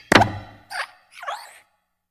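Cartoon sound effects for an animated hopping desk lamp: a plop right at the start, then two short squeaky sounds that bend in pitch, dying away by about a second and a half.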